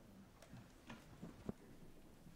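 Near silence: room tone with a few faint clicks and knocks, the sharpest about one and a half seconds in, as people sit back down in their seats.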